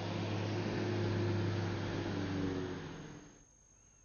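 An SUV driving by on a road: a steady engine hum with tyre and road noise, growing louder to about a second in, then fading away before the end.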